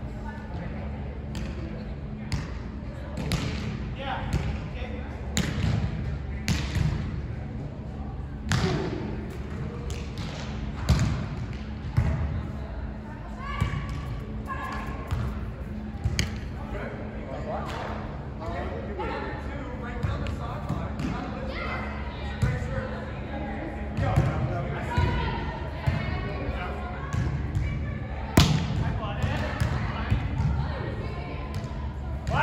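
A volleyball being struck again and again during rallies: sharp slaps of hands and forearms on the ball every second or few seconds, ringing in a large hall, over indistinct voices of players and onlookers.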